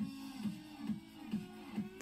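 Soft background music: a run of short, faint plucked string notes.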